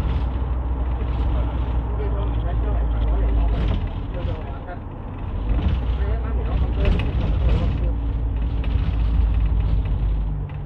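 Minibus heard from inside the cabin while moving: a steady low engine and road rumble as the bus slows down.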